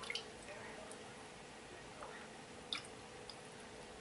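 Faint small splashes and drips of water as a hand works in a home aquarium, with a few short sharp clicks or splashes, the sharpest about two-thirds through. A faint steady hum runs underneath.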